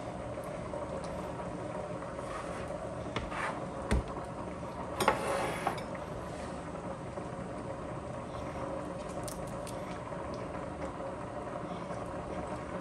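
Steady low hum and hiss of kitchen background, with a single knock about four seconds in and a short clatter and scrape just after, as ceramic bowls and a plastic cutting board are set down and moved on the countertop.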